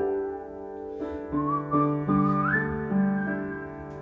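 Upright piano playing sustained chords with a wordless melody whistled over it; the whistled line slides up in pitch about a second in and again past halfway.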